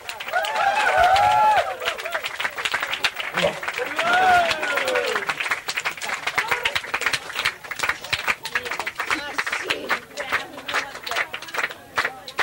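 Live audience applauding and cheering, with loud shouted calls rising and falling over the clapping about a second in and again around four seconds in. The clapping carries on and thins out toward the end.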